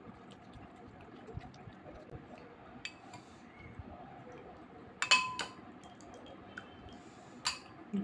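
Faint wet chewing, then a serving spoon clinks against a glass bowl of dal about five seconds in with a brief ringing tone. A second, shorter clink comes near the end.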